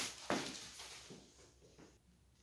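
A few short strokes of a push broom brushing damp sand across a porcelain tile floor, fading out within about the first second.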